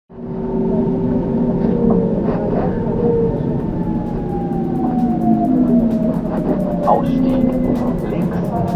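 Inside a crowded commuter train: a steady rumble and an electric motor whine that falls slowly in pitch as the train slows, with voices around.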